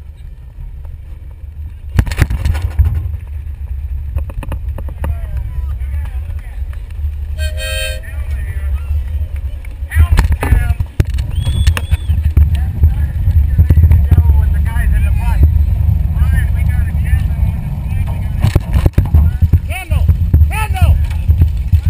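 Garden pulling tractor driving at low speed, its engine and wind on the onboard microphone making a loud low rumble, with sharp knocks at about two and ten seconds. People's voices can be heard over it in the second half.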